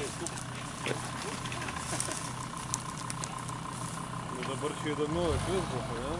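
Jeep Grand Cherokee's engine idling steadily with a low hum. Voices and laughter come in near the end.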